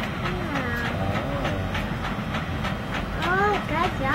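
A young child's high voice babbling briefly, twice, over a steady low background hum and a faint regular ticking.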